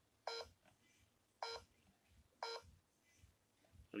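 ZKTeco iClock 360 fingerprint attendance terminal beeping three times, about a second apart: short beeps, one for each fingerprint press read by the sensor during enrollment, which ends successfully.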